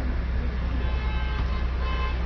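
Steady low hum and outdoor background noise of an open-air rally picked up through the PA microphones. Faint thin tones come in about half a second in and last roughly a second.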